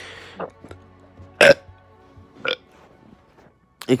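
A person burping three short times, the loudest burp about a second and a half in.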